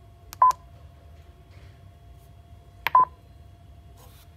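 Mindray BeneHeart D3 defibrillator's keys being pressed to start its routine user test. Each press gives a click and a short beep, twice, about two and a half seconds apart.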